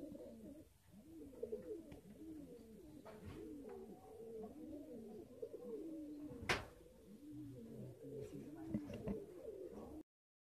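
Domestic pigeons cooing in a steady run of rising-and-falling coos, with one sharp click about six and a half seconds in.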